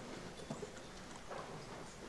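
Footsteps and a few light knocks as several people walk up to the front of a large room, over faint room murmur.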